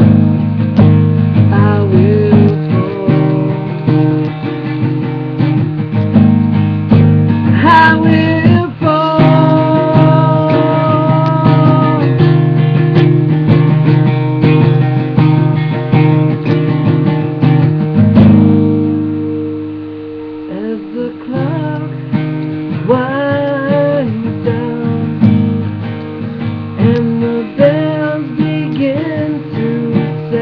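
Strummed acoustic guitar with a man's voice singing long held notes over it. About eighteen seconds in the strumming lets ring and fades for a couple of seconds, then picks up again.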